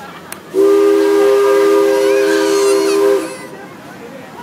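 A loud horn blast, several steady notes sounding together as a chord. It starts about half a second in and is held for nearly three seconds before cutting off.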